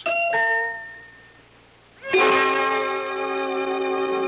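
Radio-drama music: a single bell-like note rings out and fades over about a second. About two seconds in, a loud held chord of bridge music comes in and sustains.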